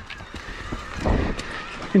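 Mountain bike rolling over a dirt and rock trail: tyre noise with irregular knocks and rattles from the bike, and a louder low rumble about a second in.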